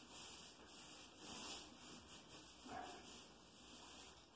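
Faint swishing of a paintbrush stroking paint across a plastered wall, in a few slow sweeps that swell and fade.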